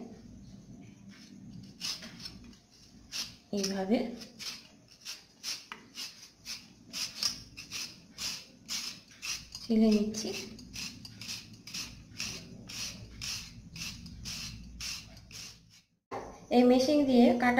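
A raw potato being shredded on a handheld metal grater, rasping strokes repeating about two to three times a second and starting a couple of seconds in.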